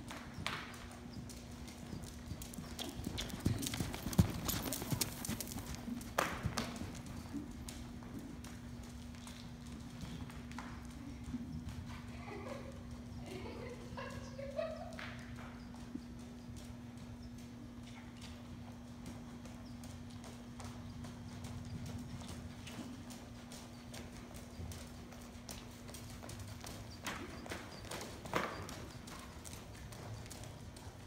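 Horse's hooves striking soft sand arena footing at the trot, a steady run of dull footfalls with a few louder thuds. A steady low hum runs underneath.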